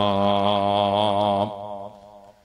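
A man's voice chanting one long held note in melodic Quran recitation, closing the verse, then breaking off about one and a half seconds in and trailing away.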